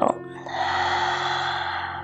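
A woman's long, audible exhale, a breathy hiss lasting about a second and a half that fades near the end, over soft background music with held tones.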